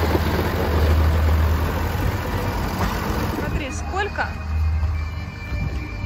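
Tractor engine running, a steady low rumble, with short voice-like sounds about two-thirds of the way through.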